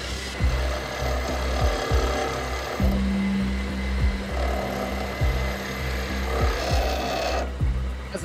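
Electric grinding wheel running with a steady motor hum as a piece of rough opal is pressed against the wet wheel, a rasping grind that comes and goes in spells, for a light grind to take the dirt off the stone. Background music with a steady beat runs underneath.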